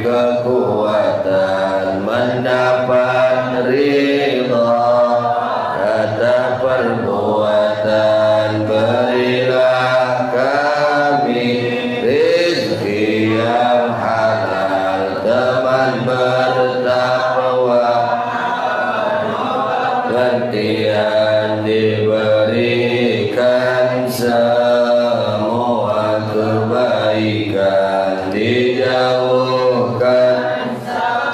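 A man chanting a closing prayer (du'a) in a melodic, sung voice into a handheld microphone, in long gliding phrases with short breaths between them.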